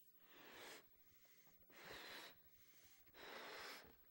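A man blowing up a balloon by mouth: three faint breaths of air pushed into it, each about half a second long, about a second apart.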